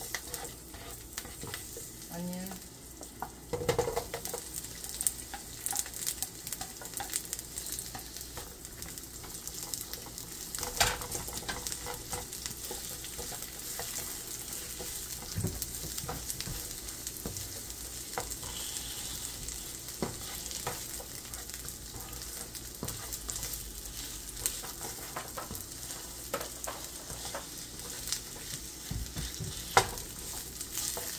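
Sliced ginger and onion sizzling in hot olive oil in a nonstick pan: a steady frying hiss, with the spatula scraping and tapping against the pan as the pieces are stirred.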